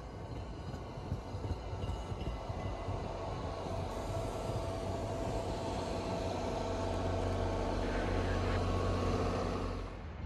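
MBTA commuter rail coaches rolling past on the rails, a continuous rumble with a steady hum that builds louder toward the end and then cuts off.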